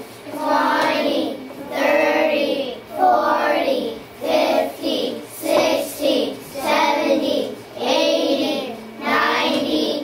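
A class of young children chanting numbers aloud in unison, about one sing-song word a second, counting along as a pointer moves across a number poster.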